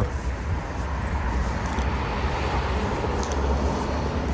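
Road traffic on a wet city boulevard: a steady low rumble with tyre hiss that swells slightly in the middle.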